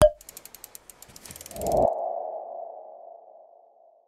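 Logo sting sound effects: a sharp hit, a quick run of rapid ticks, then a swell into a ringing tone that slowly fades away.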